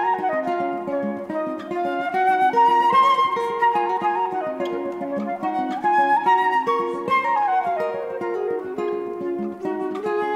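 Flute and nylon-string guitar playing a duet: the flute carries a stepping melody over plucked guitar accompaniment, with a falling run of notes about three-quarters of the way through.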